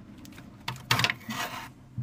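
A wooden dipstick scraping and knocking against a plastic inspection-port fitting as it is worked in a hull void and drawn back up. The rasping scrape runs about a second near the middle, with a sharp click at the end.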